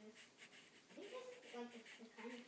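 Pencil scratching on paper in short repeated strokes while drawing, with a faint voice in the background in the second half.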